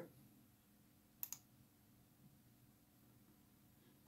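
A computer mouse button clicked, two quick clicks close together about a second in, pressing the Arduino IDE's upload button; otherwise near silence.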